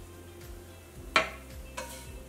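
A spatula scraping sautéed onions across a cast iron skillet. There is a sharp metallic scrape-click about a second in and a lighter one just after, over faint background music.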